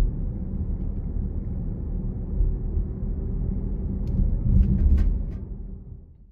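Road noise of a car being driven, heard from inside: a steady low rumble of tyres and engine that fades out near the end.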